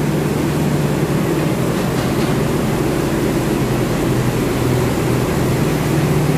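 Rice mill machinery running: a steady drone with a constant low hum that does not change.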